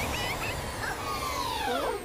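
Sound effects from the anime's soundtrack: a steady rushing noise over a low rumble, with several high squealing cries gliding in pitch, one falling steeply near the end.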